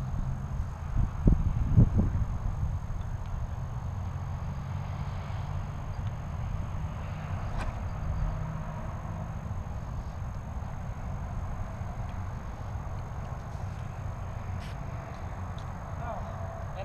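Steady low rumble of wind on the microphone across an open field, with a few loud thumps about one to two seconds in. The boomerang's flight is not heard.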